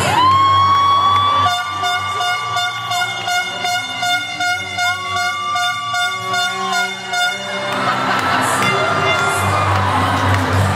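An air horn sounds two long blasts over the skating music. The first swoops up at the start and holds for about three seconds, and the second comes about five seconds in, with a fast pulsing tone beneath them.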